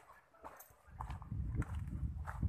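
Footsteps on loose river gravel and pebbles at a walking pace, about three steps a little over half a second apart.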